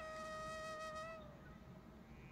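Soft background music: a flute holds one long steady note that fades out about a second and a half in, leaving near silence.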